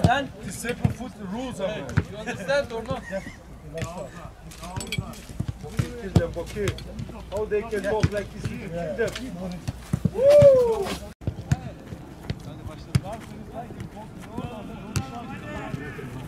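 A football being kicked and headed back and forth over a low net in foot tennis, making short sharp thuds at irregular intervals, with players' voices calling out, one loud drawn-out shout about ten seconds in, and a laugh just after.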